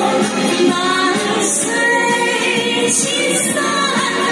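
A woman singing into a handheld microphone, holding and bending long sung notes.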